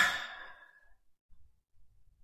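A person's audible sigh, a breathy exhale that fades out within about the first second, followed by quiet.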